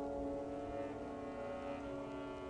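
Opera orchestra holding sustained chords, growing slightly quieter.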